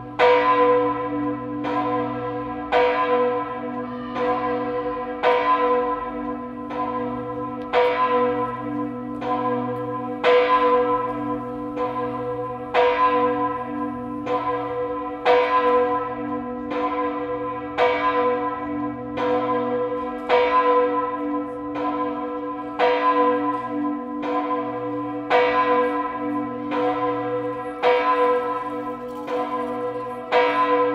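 The Kajetansglocke, a 2,384 kg bronze church bell with strike note B (h°), cast in 1967 by Karl Czudnochowsky of Erding, swinging and ringing alone. Its clapper strikes about every 1.2 s, and each stroke rings on into the next over a steady deep hum.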